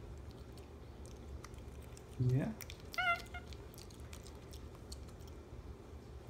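A capuchin monkey gives one short, high squeak about three seconds in, with faint clicks of chewing while it eats cake.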